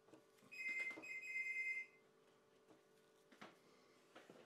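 A high electronic ringing tone, two close pitches sounding together, lasting about a second and a half with a short break partway through, over a faint steady hum.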